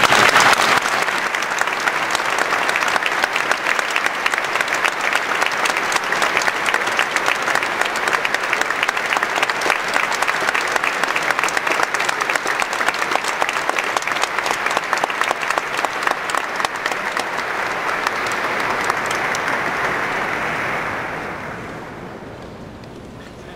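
Audience applauding steadily, loudest in the first second and dying away just before the end.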